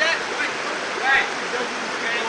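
Steady rush of river water over rocks, with short voice-like calls from the group near the start and a louder one about a second in.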